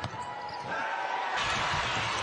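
Arena sound of a college basketball game: crowd noise in a large hall, with a ball bouncing on the hardwood court. The crowd noise jumps louder about a second and a half in.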